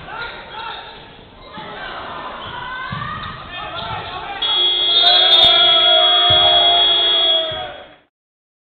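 Voices and shouts echo in a sports hall, with a basketball bouncing. About four and a half seconds in, the end-of-game buzzer sounds as a loud, steady horn for about three seconds, marking the clock running out in the fourth quarter.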